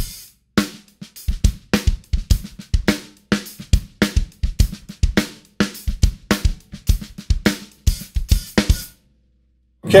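A rock beat played on a DW Exotic Natural drum kit with Zultan cymbals, picked up by the close microphones only: kick drum, snare and hi-hat in a steady groove. The beat stops about nine seconds in.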